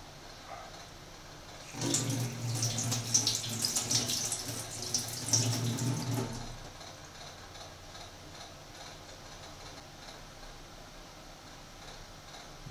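Water running into a stainless steel sink and splashing over a hand for about four and a half seconds, starting about two seconds in, as the finger is rinsed.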